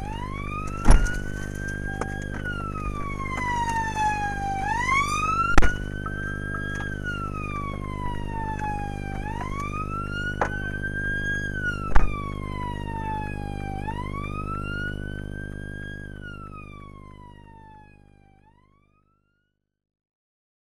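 Police car siren on a slow wail, rising and falling about every four to five seconds over a steady low drone. Three sharp knocks cut through it, and the whole sound fades out near the end.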